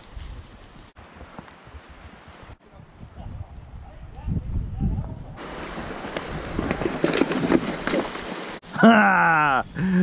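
Mule's and horses' hoof steps on a brushy trail, with leaves and brush swishing past and wind rumbling on the microphone, broken into several short cuts. A man's voice calls out briefly near the end.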